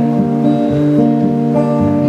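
Acoustic guitar strummed in an instrumental gap between sung lines, its chords ringing and changing a couple of times.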